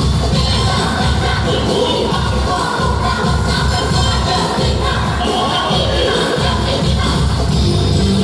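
Loud pop music with singing, played over the show's sound system.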